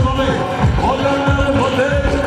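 Live wedding band dance music: deep drum beats about three times a second under held keyboard-like notes and a melody line that slides between pitches.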